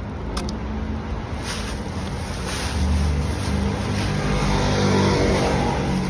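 A motor vehicle's engine running close by, growing louder in the middle and easing off near the end, over the crinkling of plastic rubbish bags being handled.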